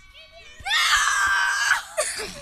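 A girl screaming in excitement: one loud, high-pitched scream about a second long, starting about half a second in.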